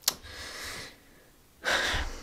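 A woman's breathing: a soft breath out in the first second, then a sharper, louder breath in near the end.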